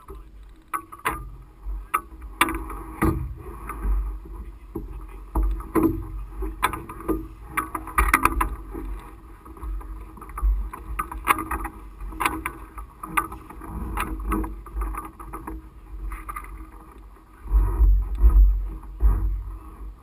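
Irregular knocks, clicks and rattles carried up the powered parachute's mast to the camera as the aircraft is handled during packing, over a low wind rumble on the microphone that swells in gusts, loudest near the end.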